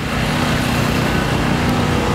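A motor running steadily: a continuous low hum with no change in pitch.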